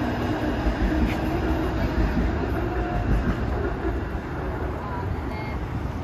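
Steady low rumble of outdoor city background noise, with faint voices in it.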